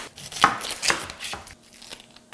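Chef's knife cutting through an onion and knocking on a wooden cutting board: three sharp strikes about half a second apart, then quieter near the end.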